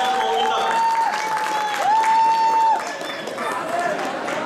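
Conch shells (shankha) blown in several long, steady, overlapping notes, each swelling in and falling away at its end; the last ends a little before three seconds in. Crowd noise and some clapping run underneath.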